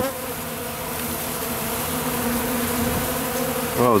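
Honeybees buzzing as they fly in and out of a pollen feeder close to the microphone, a steady drone of many bees at once.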